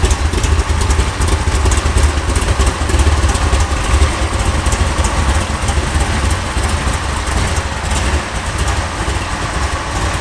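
Performance-built 454 cubic inch Chevrolet big-block V8 idling with a steady, uneven low rumble, which eases a little about eight seconds in.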